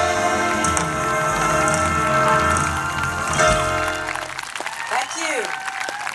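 Live band holding the final chord of a song, which cuts off about four and a half seconds in; audience applause and shouts follow.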